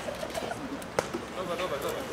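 Overlapping chatter of several voices, children's among them, with one sharp click about a second in.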